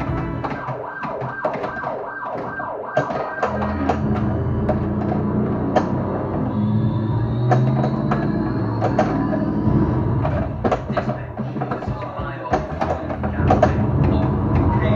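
Williams Getaway: High Speed II pinball machine in play, heard through an action camera's microphone: its custom PinSound music mix and siren effects play loudly over upgraded speakers. Frequent sharp clicks and knocks from the flippers, ball and playfield mechanisms run throughout, with a slow rising siren-like tone in the middle.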